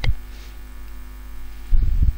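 Steady electrical mains hum in the recording, with a brief low rumble near the end.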